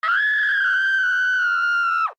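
A single long, shrill scream held at a steady high pitch for about two seconds, sliding down in pitch as it breaks off.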